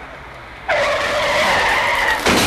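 A sudden loud screech, like a tyre skid, breaks in under a second in and holds steady with a shrill ringing edge.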